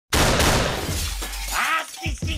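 A sudden loud crash sound effect that dies away over about a second and a half, followed near the end by a short vocal sample.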